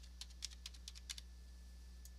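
Computer keyboard being typed on: a quick run of faint keystrokes that stops a little over a second in.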